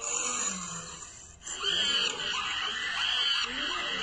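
Recorded animal calls: a series of about three high, arching calls, beginning about a second and a half in.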